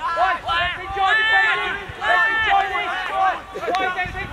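Several people shouting over one another, with long drawn-out calls about a second in and again about two seconds in.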